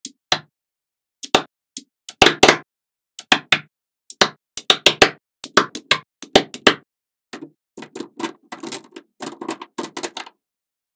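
Small neodymium magnet balls clicking and snapping together as cubes of them are pressed onto a larger block. A series of sharp, irregular clicks, some coming in quick rattling clusters.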